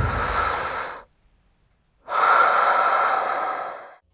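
Two long, breathy rushes of noise like heavy breaths. The first fades out about a second in, and after a second of silence the second swells up and fades away.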